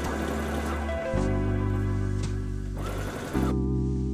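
Electric sewing machine stitching fabric in short runs, under background music of sustained chords that change about a second in and again past three seconds.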